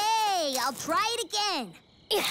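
A cartoon character's voice making three short wordless vocal sounds, each rising and then falling in pitch.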